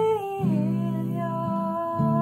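A woman singing a slow lullaby melody in long held notes that step downward in pitch, over strummed Gibson acoustic guitar chords. A new chord comes in about half a second in and another at the end.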